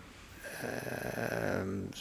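A man's drawn-out, low "uhh" hesitation, starting about half a second in and held for about a second and a half before he answers.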